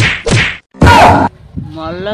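Slaps to the face, three in quick succession, the last and loudest about a second in, followed by a voice wailing in a wavering pitch.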